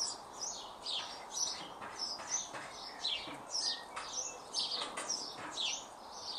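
Songbirds chirping: short high notes that slide downward, about two a second, going on throughout.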